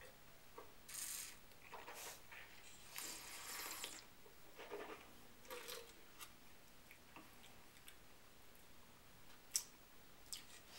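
Faint mouth sounds of wine tasting: a few short slurps and swishes of wine drawn through the mouth, then wine spat into a metal tin, with a few small clicks later.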